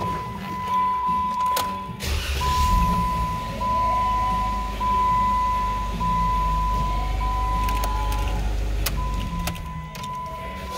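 2017 Jeep Wrangler's 3.6-litre V6 cranked and started about two seconds in, then idling with a steady low rumble that drops away shortly before the end. Background music plays throughout.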